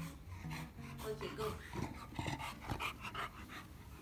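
Chow Chow dog vocalising while being held, a string of short sounds that rise and fall in pitch.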